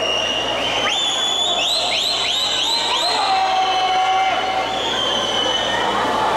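Spectators cheering during a swimming race over steady crowd and pool noise. In the middle comes a quick string of about six short, shrill, high-pitched rising calls.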